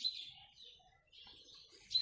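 Small songbirds chirping faintly, with short high calls at the start and again through the second half.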